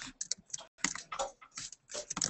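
Typing on a computer keyboard: a run of quick, irregularly spaced keystrokes.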